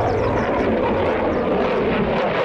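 Twin jet engines of an F-15 fighter passing almost overhead in a steep climb: a loud, steady rush of jet noise whose pitch sinks slowly.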